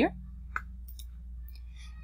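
A few faint clicks from working a computer, over a steady low hum.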